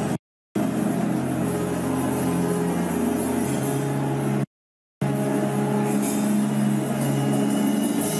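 A congregation praying aloud in tongues together over sustained church keyboard music with held low chords, forming one dense, continuous wash of sound. The audio drops out to silence twice: just after the start and again for about half a second halfway through.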